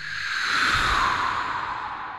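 A whoosh transition sound effect: a breathy rush of noise that swells over the first half-second, sinks slightly in pitch and slowly fades away.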